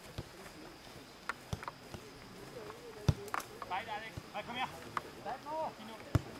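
Short shouts from football players across the pitch, with several sharp knocks scattered through, the loudest about three seconds in.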